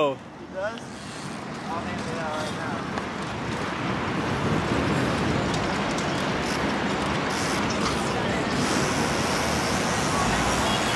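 Steady road and traffic noise heard from a bicycle riding along a city street beside cars, building up over the first few seconds and then holding level, with faint voices near the start.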